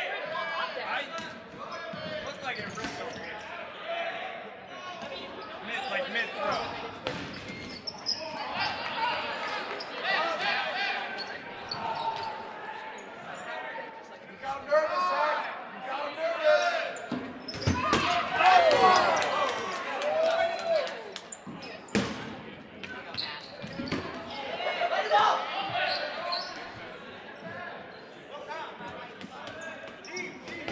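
Dodgeball game in a gymnasium: players shouting and calling out to each other in overlapping voices, with balls thrown and smacking onto players and the hardwood floor. A few sharp impacts stand out, near the middle and again a few seconds later. Everything echoes in the large hall.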